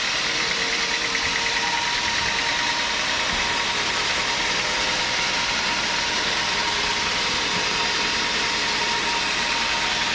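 Band sawmill running, its blade cutting through a teak log: a steady, even noise with a thin high tone held over it.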